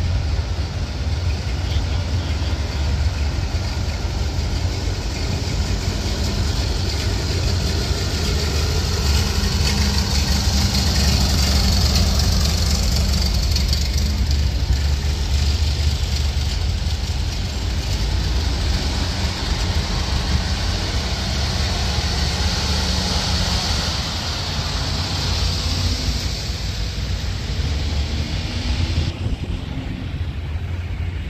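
Engines of slow parade vehicles passing close by: a small antique tractor and then a heavy fire truck's diesel, a steady low rumble that grows loudest in the middle as the truck goes past.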